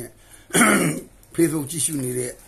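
A man clears his throat once, a short rough burst about half a second in, between stretches of his own speech.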